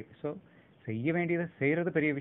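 Speech only: a man talking, pausing briefly just after the start and resuming about a second in.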